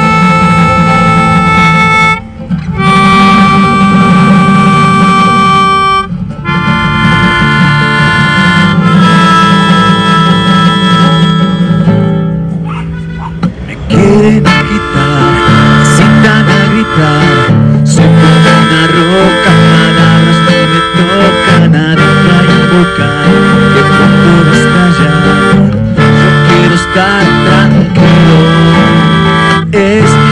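Live acoustic duo: a nylon-string classical guitar accompanying a melodica that plays long held melody notes. About halfway through the playing drops back for a moment, then resumes with fuller, more rhythmic guitar under the reed melody.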